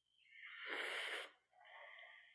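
A person breathing out audibly into a headset microphone: a long breathy exhale, then a second, softer one.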